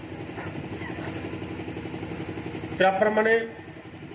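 A small engine idling steadily with a fast, even throb. A short burst of a man's voice through the loudspeaker cuts in a little before the end.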